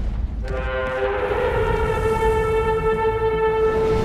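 A long horn blast over a low rumble. It starts about half a second in with two notes that soon merge into one, and is held steady until near the end.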